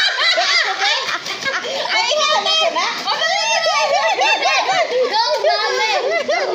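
Several children shouting and squealing excitedly over one another, many high voices overlapping without pause.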